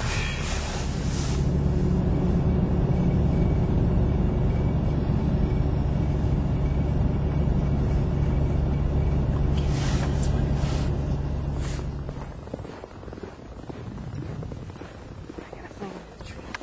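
Car running, heard from inside the cabin: a steady low drone that drops away about twelve seconds in, with a couple of short clicks just before.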